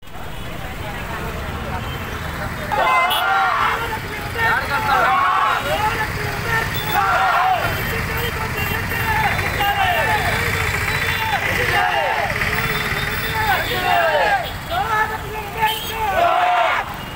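A group of men shouting protest slogans, call after call about once a second from a few seconds in, over a steady rumble of traffic and crowd noise.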